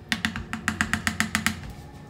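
A cooking spoon knocked rapidly against the rim of a metal pot, about a dozen sharp taps at roughly eight a second over a second and a half, shaking food off the spoon after stirring.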